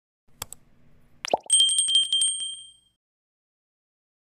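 Subscribe-button sound effect: two quick mouse clicks, a short rising pop, then a bright bell ding that rings with a rapid shimmer for about a second and a half and fades away.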